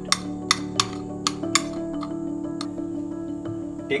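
A metal teaspoon clinking and tapping against a plate while stirring spice powder: about five quick, irregular clinks in the first second and a half and one more later, over background music.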